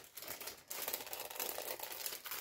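Packaging crinkling and rustling as it is handled, with a brief lull about half a second in.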